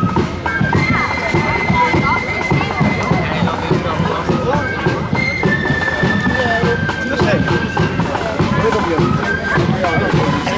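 Marching flute band playing a tune in long held high notes that step from one pitch to another, with people talking close by.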